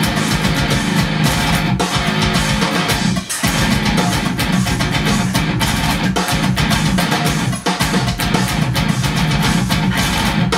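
Metalcore music: an electric seven-string guitar playing a fast picked riff over a drum kit, with two brief breaks, about a third of the way in and again about three-quarters through.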